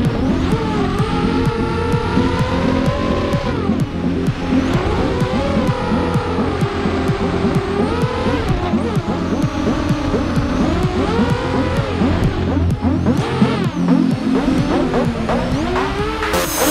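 The brushless motors and propellers of an SRD250 V3 250-size racing quadcopter whining in flight. The pitch keeps rising and falling as the throttle changes through flips and dives. Music plays faintly underneath.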